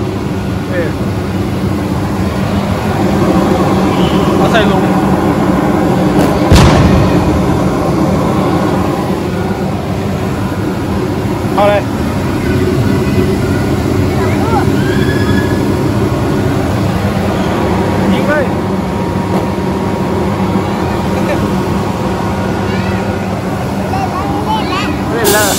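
Steady din of a busy indoor play area: scattered voices over a continuous mechanical hum, with one sharp bang about six and a half seconds in.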